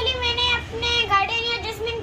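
A young boy's high-pitched voice talking in a sing-song manner, its pitch holding level for stretches and stepping up and down.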